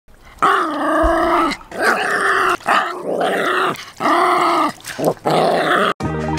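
Pomeranian growling and barking in a series of about five drawn-out calls, each about a second long: an angry reaction to the water.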